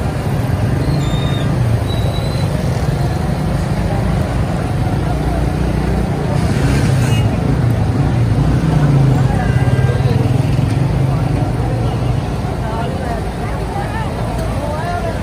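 Busy street-stall ambience: a steady low rumble of road traffic with people talking in the background, over samosas deep-frying in a large wok of oil.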